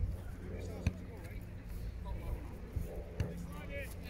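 Outdoor field ambience: distant voices of players and spectators over a steady wind rumble on the microphone, with two sharp knocks, one about a second in and one a little after three seconds.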